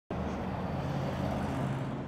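A steady low rumble of outdoor background noise with a faint low hum, of the kind made by distant road traffic.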